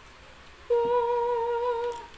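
A person humming one steady, fairly high note with the mouth closed, starting just under a second in and held for about a second.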